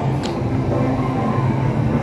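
Las Vegas Monorail train running along its elevated track, a steady low electric hum.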